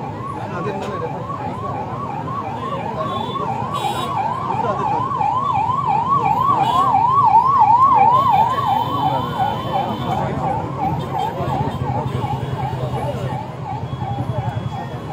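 A fast warbling emergency-vehicle siren, rising and falling about three times a second. It grows louder to a peak about eight seconds in, then fades away.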